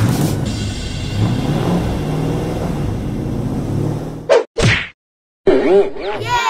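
Cartoon sound effects: a low steady rumble for about four seconds, then two quick whooshing hits. After a brief silence comes a sound with wavering, falling pitch glides near the end.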